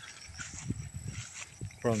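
Soft, scattered low thumps and rustles of footsteps through tall grass and of a handheld phone being moved, with a man starting to speak near the end.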